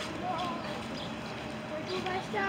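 Faint background voices of people talking over steady outdoor ambience.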